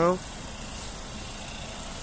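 Steady, even running sound of the Volvo V70 2.5T's turbocharged five-cylinder petrol engine idling with the bonnet open.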